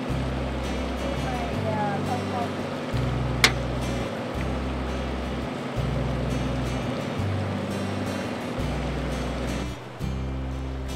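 Background music with a bass line stepping between low notes about every second, and one sharp click about three and a half seconds in.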